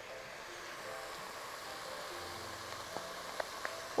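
Meat, onion and garlic sizzling in a pot on the hob, a steady quiet hiss, with a few light taps near the end.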